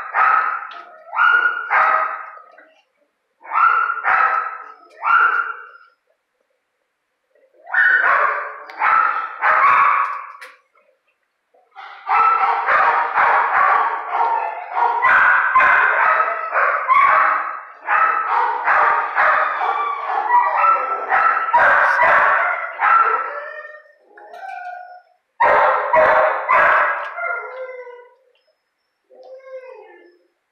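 Dogs barking and yelping in repeated bouts, with short gaps between the bouts at first and a long, nearly unbroken run of barking through the middle.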